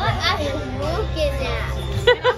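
Young voices making playful sounds without clear words, over a steady low hum of room noise.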